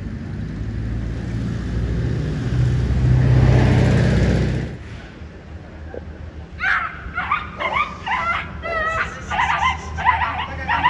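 A motor vehicle running close by, growing louder and then dropping away sharply about five seconds in. From about six and a half seconds, a frightened puppy yelps and squeals over and over as it is grabbed and lifted.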